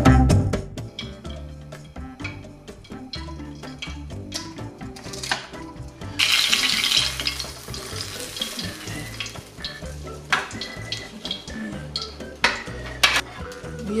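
Spring rolls frying in hot oil, with a loud burst of sizzling about six seconds in that lasts roughly three seconds, and a few sharp metal clinks of tongs and a slotted spoon against the pan.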